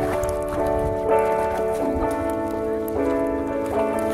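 Background music: held notes and chords that change about every second, over a low rumble.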